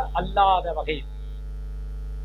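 A man speaking for about the first second, then a pause in which a steady low electrical hum is left on its own; the hum runs unchanged under the speech too.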